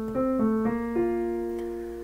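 Piano playing a short bossa nova phrase: a few chords in quick succession, then a last chord about a second in that is held and fades away.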